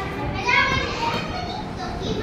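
Young children's high-pitched voices chattering, with the loudest burst about half a second in.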